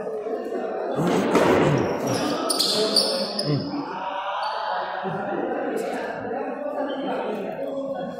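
Frontón handball bouncing on the concrete court floor and being struck against the wall: a few sharp, separate smacks, about a second in, around three seconds and near six seconds.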